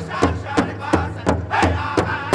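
Powwow drum group playing a jingle dress dance song: a large drum struck in unison in a steady beat about three times a second, with a group of singers chanting a high, sliding melody over it.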